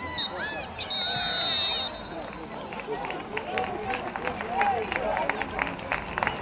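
Referee's whistle: a short pip, then one long blast of about a second, over the shouts and calls of children on the pitch.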